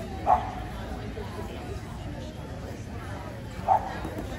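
A dog barking twice, a short bark about a third of a second in and another near the end, over steady background chatter.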